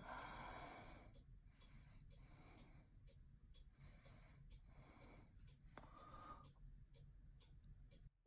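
Near silence: faint, regular breathing close to the microphone, with one tiny click about six seconds in.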